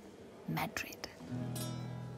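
Film score entering: a guitar chord is strummed about a second in and left ringing, after a brief soft-spoken line.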